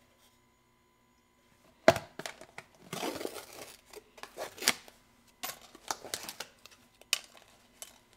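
A sharp plastic click about two seconds in, then several seconds of crinkling and rustling with a few more clicks as a plastic protein-powder tub and its screw lid are handled and opened.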